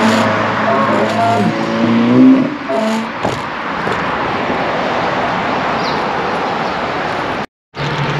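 A car driving past with a steady engine hum that bends in pitch and peaks about two seconds in, over wind and road noise on the microphone of a moving bicycle. After that only the steady wind and road noise is heard, broken by a brief gap of silence near the end.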